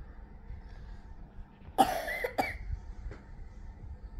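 A person coughing: a short double cough about two seconds in, loud against an otherwise quiet room.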